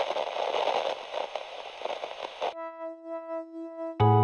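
Television static sound effect: hiss and crackle over glitching colour bars that cuts off suddenly about two and a half seconds in, followed by a steady test-pattern tone whose loudness wavers.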